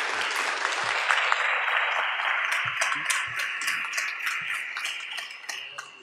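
Audience applauding after a talk, dense at first and thinning out and fading over the last couple of seconds.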